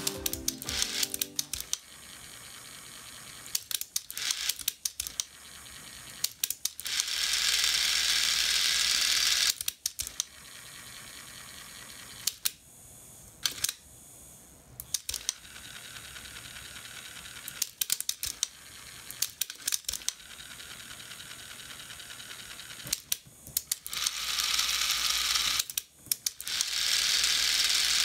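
Philips SER1 cassette tape mechanism run on the bench: repeated clicks of its levers and gears as it shifts between modes, with two longer stretches of steady motor whirring, about seven seconds in and near the end. It runs smoothly after reassembly, and is called great and perfect straight afterwards.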